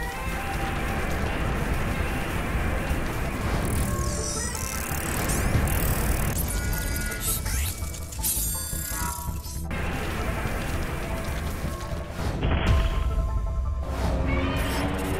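Cartoon soundtrack: music over a dense bed of sound effects that runs throughout, with gliding and stepping tones through the middle seconds.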